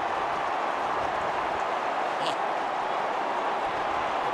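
Large stadium crowd cheering, a dense and steady wall of noise, celebrating the goal that seals the premiership.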